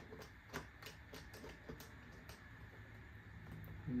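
Faint, irregular small clicks of a battery-pack retaining screw on an Electro-Voice Everse 8 portable speaker being turned by hand, most of them in the first two seconds or so.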